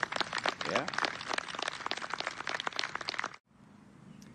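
Spectators applauding a holed putt, a dense patter of many hands clapping that cuts off abruptly about three and a half seconds in.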